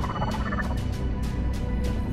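An alien's warbling, gobble-like voice speaking in its own tongue, trailing off in the first half second. Under it runs a low rumble with a fast series of clicks.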